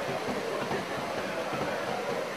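Heavy rain falling steadily, a dense, even hiss with no break.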